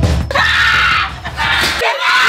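Excited screaming, two long shrieks with a short break between them, over background music that cuts out near the end.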